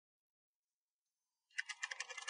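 Typing on a laptop keyboard: a quick run of keystrokes that starts about one and a half seconds in.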